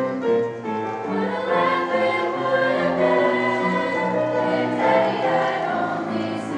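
Treble choir of young women singing a choral piece in harmony, held chords moving from note to note.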